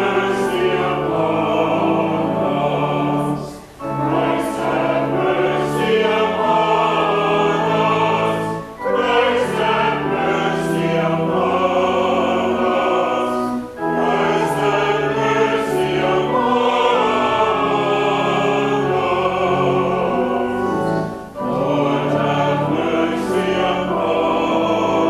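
Church choir singing with organ accompaniment, in phrases broken by four short breaths.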